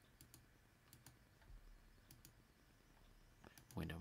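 Faint computer mouse clicks: three pairs of short, sharp clicks in the first half or so, over near-silent room tone.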